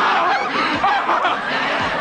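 Studio audience laughing, many voices together.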